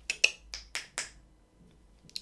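Five sharp finger snaps over about a second, about four a second, the second the loudest: snapping to call a dog over.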